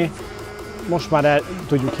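A man speaking in an interview, with background music underneath.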